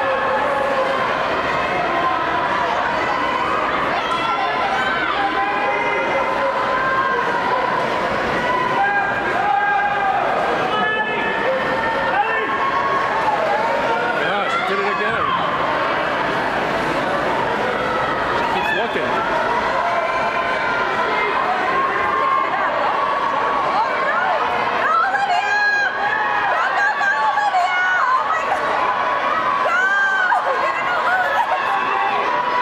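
Crowd of spectators shouting and cheering on swimmers during a race, many voices overlapping at a steady, loud level in an indoor pool hall.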